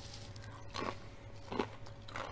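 Crisp tortilla chip crunching as it is bitten and chewed, a few short sharp cracks, the clearest about a second in and again near the end.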